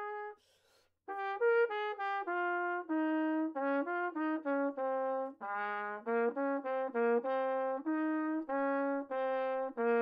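Solo trumpet playing a study in B-flat major. A held note ends about half a second in, followed by a quick snatched breath, then a phrase of separate tongued notes stepping up and down, closing on a long held note.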